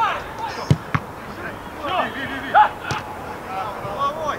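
A football kicked hard with a sharp thud about two-thirds of a second in, followed by a smaller knock, and another sharp knock near three seconds; players shout around them.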